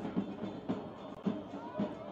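Music with a steady drumbeat, about two beats a second, under the broadcast's background.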